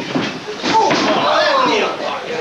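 Two or three sharp slams within the first second, from impacts in the wrestling ring, followed by a person shouting with a rising and falling pitch.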